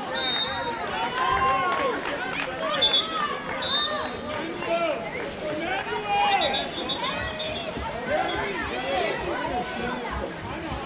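Many voices shouting and calling out at once over the water, with several short, high whistle blasts in the first seven seconds.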